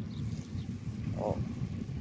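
Low, steady rumble of wind on the phone's microphone outdoors, with one short faint blip a little past the middle.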